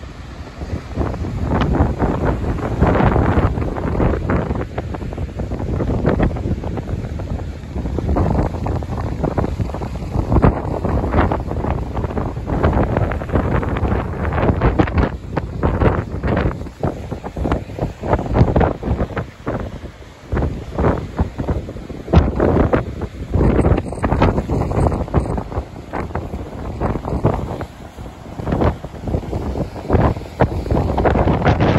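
Wind buffeting the microphone in uneven gusts, over the continuous wash of heavy surf breaking.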